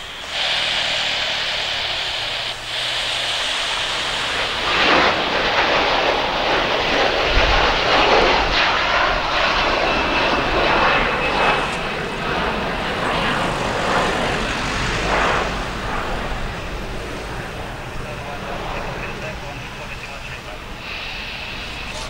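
Twin-engine widebody jet airliner taking off at high thrust. A high engine whine at first, then a loud, deep rumbling engine noise swells in about four to five seconds in and slowly fades as the jet climbs away.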